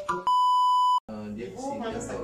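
A single steady high electronic beep, an edited-in censor bleep, lasting under a second and cut off sharply, followed by people talking.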